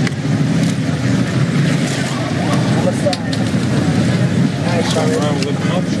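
Steady low hum of an idling vehicle engine, with indistinct voices of people talking over it and a few short knocks about three seconds in.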